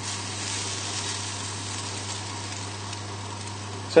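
Peppercorn cream sauce bubbling in a hot frying pan on a gas hob, a steady sizzling hiss, over a low steady hum.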